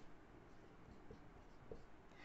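Faint marker pen writing on a whiteboard.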